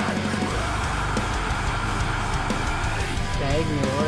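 Heavy metal song with distorted electric guitars and drums, a singing voice coming in during the last second or so.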